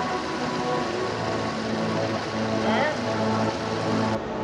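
Steady rush of a creek spilling over shallow rock ledges in a small waterfall, heard under background music with sustained notes.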